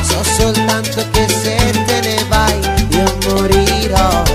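Salsa music, an instrumental passage without vocals: a repeating bass line under melodic lines and dense, steady percussion.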